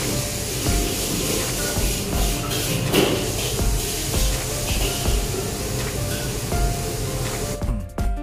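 Continuous hiss of a busy wok kitchen, with music playing over it to a steady low beat.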